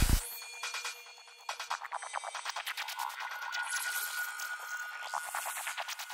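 Psychedelic trance DJ set dropping into a breakdown: the kick and rolling bassline cut out just after the start. What is left is thin, high synth texture, with a fast ticking pattern from about a second and a half in and a held high synth tone from about three seconds.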